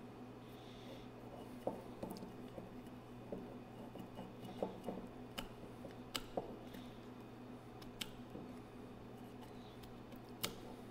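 Wine-bottle capsule being cut round the neck with the small blade of a waiter's corkscrew: faint scattered scrapes and ticks. A steady low hum runs underneath.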